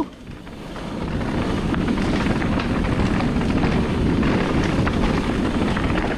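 Wind rushing over the camera microphone and mountain bike tyres rumbling over a rocky dirt trail at speed. The noise builds over the first second, then holds steady.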